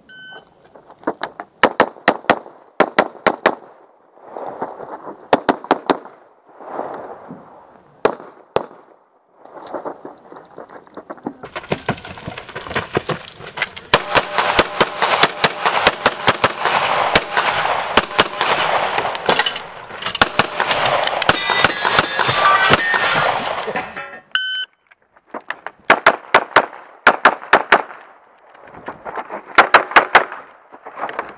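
Electronic shot timer's start beep, then a pistol fired rapidly in pairs and strings with short pauses between. The middle stretch is louder and noisier, with fast shots over a steady noise, and a second timer beep about 24 seconds in starts another string of shots.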